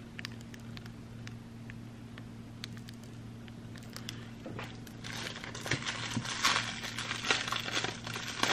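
Cellophane wrapping on a false-eyelash case crinkling as it is handled: a few scattered ticks at first, then denser, louder crinkling over the last three seconds. A faint steady low hum runs underneath.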